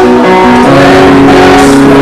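Live acoustic guitar music with an audience singing along, the sung notes held and stepping between pitches.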